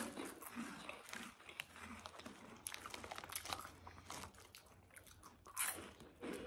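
People chewing crunchy baked corn puff snacks: a run of small, faint crunches, with one louder crunch near the end.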